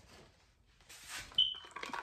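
A brief rustle about a second in, then a single short high-pitched beep.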